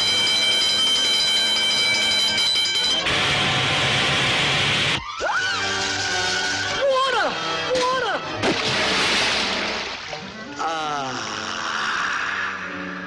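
Cartoon soundtrack of orchestral score and sound effects: a long shrill steady tone, a rushing hiss, then a cartoon cat's voice yelling with wild swoops in pitch, and a quick falling glide near the end.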